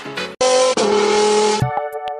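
Background music stops abruptly, followed by a loud hissing sound effect about a second long with steady tones under it. Near the end a different piece of music, with short notes and clicks, begins.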